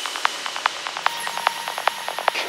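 Breakdown of an electronic trance track: with no kick drum or bass, only a fast, even ticking of short hi-hat-like clicks remains, over a faint high synth tone.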